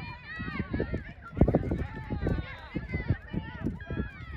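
Several voices shouting and calling across a soccer field during play, overlapping and raised, with a single loud thump about a second and a half in.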